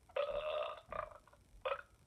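A person burping, one drawn-out burp of a bit over half a second, followed by two short throaty bursts.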